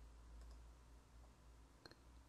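Near silence with a couple of faint computer mouse clicks, the sharpest one near the end.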